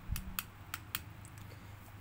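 A few light, sharp plastic clicks as a head torch is handled and turned over in the hand, most of them in the first second.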